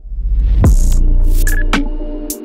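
Cinematic sound-design hits: a deep sub-bass boom swells in at once, with a falling sweep and several sharp, bright whooshes and impacts layered over it.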